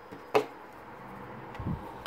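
Hands handling an Ericsson R520m mobile phone while fitting its battery into the back: one sharp plastic click about a third of a second in, then a soft low bump near the end.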